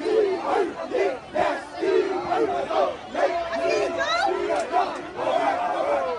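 A group of men shouting and chanting in short, rhythmic calls, about two a second, amid a surrounding crowd. There is a brief rising high-pitched call about four seconds in.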